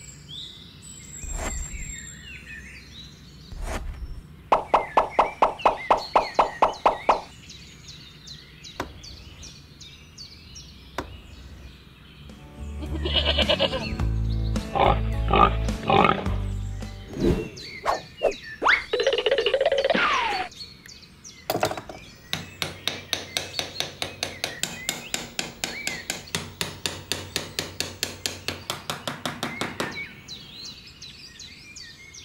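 Light background music with scattered knocks. In the last eight seconds a small hammer taps drinking straws into sand, quick and even, about five taps a second.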